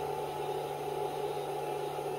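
A steady electrical hum with a higher, even whine above it, from a battery-fed power system running under a load of about 980 watts.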